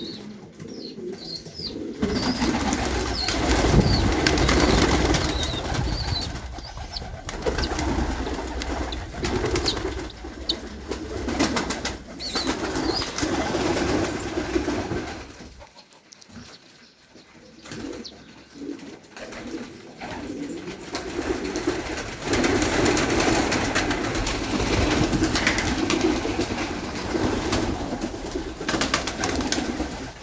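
Domestic pigeons cooing in a loft, the low calls coming in repeated bouts, with a short quieter gap about halfway through.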